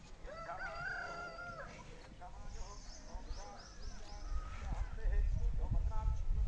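A rooster crowing once near the start: a single long call that rises, then holds for over a second. A low rumble builds toward the end.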